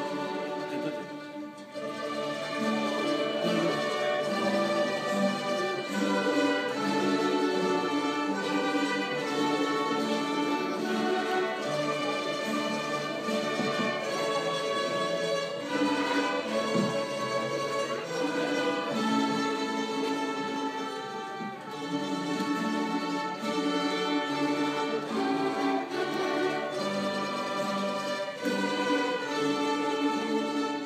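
Small orchestra of violins and other bowed strings playing held, sustained notes, with a brief lull about a second and a half in.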